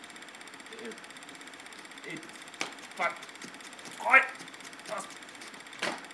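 A steady, fast mechanical rattle, with a few short vocal sounds about three, four and five seconds in, the loudest near four seconds. There are two sharp knocks, one before the first vocal sound and one near the end.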